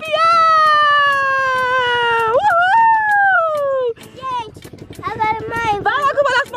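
A long drawn-out high-pitched vocal cry lasting about four seconds, slowly falling in pitch with a brief jump up in the middle, followed by a short quieter pause and then talking.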